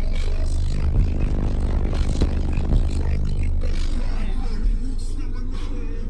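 A competition car audio subwoofer system in a truck playing deep bass at high level, with mid-range clutter over it; the bass cuts off near the end.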